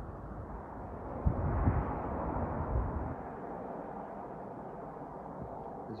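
Outdoor background noise picked up by a handheld phone, with a broad swell of noise that builds about a second in and fades by the middle, and a few low thumps during the swell.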